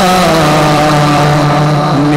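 A male naat singer, amplified through a microphone, holding one long steady note.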